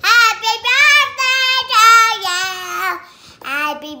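A young girl singing loudly in a high voice: a run of drawn-out notes sliding up and down for about three seconds, then a short break before she carries on.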